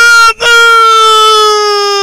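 A person's voice gives a short loud syllable, then calls out one long drawn-out note that slides slowly lower in pitch.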